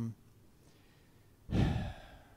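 A man's breath close to the microphone, a short noisy exhale lasting about half a second, near the end; a spoken word ends just at the start.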